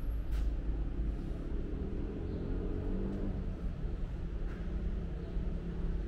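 Steady low rumble of background noise, with a faint hum in the middle stretch and a single click just after the start.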